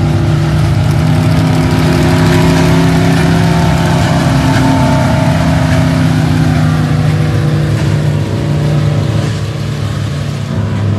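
A pack of Midwest modified dirt-track race cars running together past the microphone, their V8 engines making a loud, steady drone whose pitch rises a little in the middle and eases off near the end as the field goes by.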